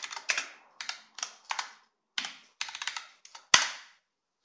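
Keystrokes on a computer keyboard, typed in short runs of a few clicks with gaps between them. Near the end comes one harder, louder stroke as the Enter key is pressed.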